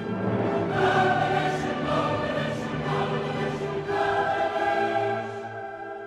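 Background choral music: a choir singing long held chords that change about a second in and again about four seconds in.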